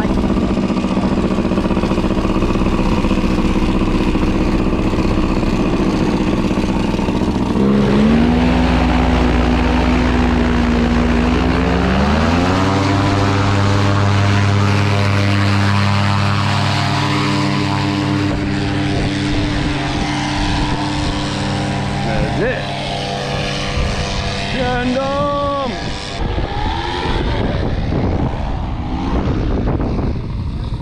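Tandem paramotor's engine and propeller running at a steady low throttle, then opened up in two steps about 8 and 12 seconds in, the pitch rising each time, to full takeoff power. The engine holds that power for about ten seconds, then fades over the last several seconds.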